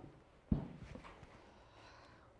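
A single thump on the stage floor about half a second in, followed by a few faint knocks and scuffs, as a performer moves across the floor.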